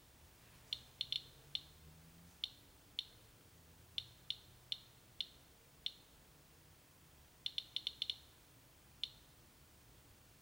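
Radiation Alert Inspector EXP Geiger counter clicking at random, irregular intervals, about two clicks a second with a quick run of six about three-quarters of the way in. Each click is one count from its pancake probe resting on a wood-look ceramic tile, reading about 88 counts per minute.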